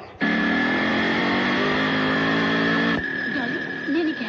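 A motor vehicle's engine running steadily, its pitch rising slightly. It starts suddenly and cuts off abruptly about three seconds in.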